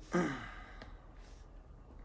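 A man's short voiced sigh just after the start, falling in pitch over less than half a second.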